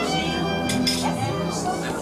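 Hungarian nóta (magyar nóta) with violin accompaniment, played in sustained, wavering notes, with a voice along with it.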